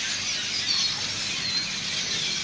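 A large flock of birds gathered in the treetops, calling all at once: a loud, continuous chorus of many overlapping high chirps and squeaks.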